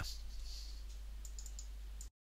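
A few quick, faint clicks of a computer mouse over a steady low electrical hum and hiss.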